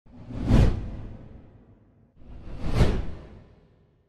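Two whoosh sound effects from an animated logo intro, each swelling to a peak and then fading away: the first about half a second in, the second just under three seconds in.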